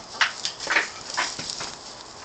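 About five short, sharp animal noises in quick succession, close to the microphone, from a goat at the fence and the chickens around it.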